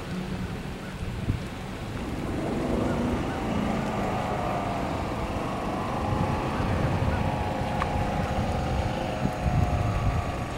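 Wind buffeting the microphone in low, uneven gusts. From about two seconds in, a distant engine drones steadily, its pitch wavering slightly.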